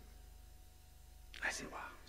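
A pause in amplified speech with only a faint, steady low hum, then a man's quiet, breathy speech begins about one and a half seconds in.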